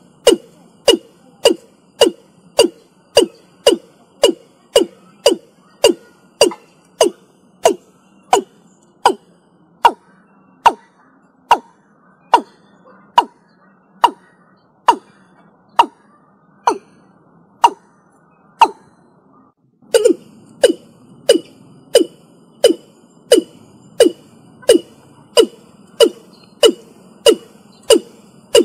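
Watercock calling: a long series of short, sharp notes, each dropping in pitch, at about two a second. Partway through the notes come slower and higher, and about twenty seconds in they quicken and drop lower again over a louder background hiss.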